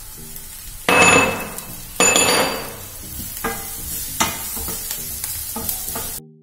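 Chopped onions and spices sizzling in oil in a stainless steel frying pan while a wooden spatula stirs and scrapes them, with two loud scraping strokes about one and two seconds in and lighter ones after.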